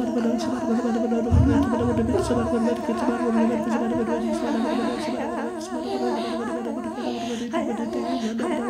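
Several voices improvising wordless vocal music together: a steady low hummed drone with other voices warbling above it in wide, fast vibrato. A short deep low sound comes about a second and a half in.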